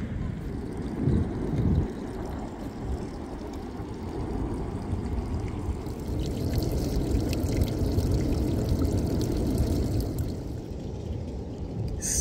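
Steady rushing seaside noise, mostly a low rumble with a little hiss: wind on the microphone and water at the shore. Two low bumps sound about one and two seconds in.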